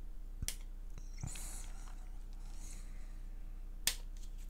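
Sprue cutters snipping plastic model parts from the sprue: two sharp clicks, a small one about half a second in and a louder one near the end, with a soft hiss of the plastic being handled between them.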